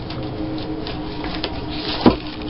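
Paper rustling and shuffling as sheets and paper strips are handled and put away, with a steady low hum underneath.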